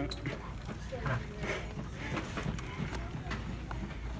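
Shop background: a steady low hum with faint, distant voices and a few light clicks and taps scattered through it.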